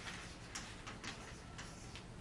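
Chalk writing on a blackboard: a faint, irregular run of short taps and scratches as letters are written.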